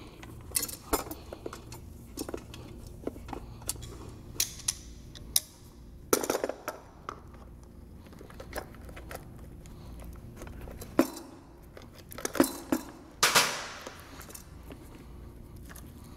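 Handling noises as a pump cable is pushed through the hole in a hard plastic grinder-pump top housing: scattered clicks and taps, with two longer scraping rustles about six seconds in and again past thirteen seconds.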